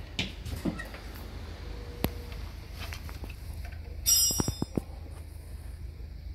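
Small clicks and knocks from handling a replacement fuel pressure regulator and tools under a car's hood. About four seconds in comes a bright metallic clink that rings, followed by a quick run of ticks, over a steady low hum.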